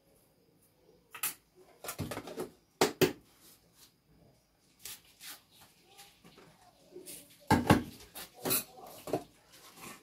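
Irregular knocks and clinks of glass jars and plastic containers being handled and set down on a kitchen counter, loudest about three seconds in and again near eight seconds.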